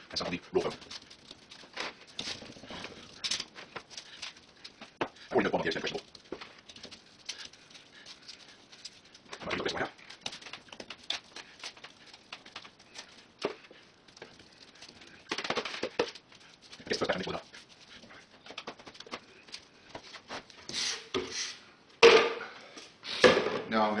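Gloved hands scooping wet Sculptamold papier-mâché compound from a plastic tub and pressing it onto foam blocks: irregular soft handling noises and taps of the tub.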